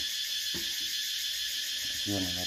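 A steady high-pitched hiss of background noise, with a faint single click about half a second in.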